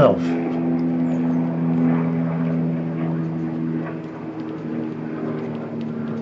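A steady, low mechanical hum holding several even pitches, like a running motor.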